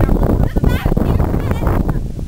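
A person's voice warbling, its pitch wavering quickly in short bursts, over a loud low rumble on the microphone.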